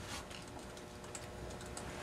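Faint clicks of laptop keys being tapped, over a faint steady hum.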